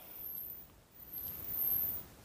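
Quiet room tone, a faint hiss that dips to near silence a little past halfway and swells slightly again near the end.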